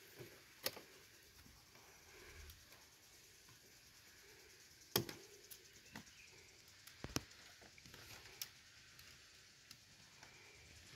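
Scattered sharp clicks and knocks from working a Magi-clamp Jumbo wire binding tool, about half a dozen spread over a quiet background, the loudest about five seconds in.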